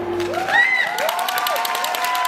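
Dance music stops about half a second in, and the audience breaks into whoops, cheering and dense clapping.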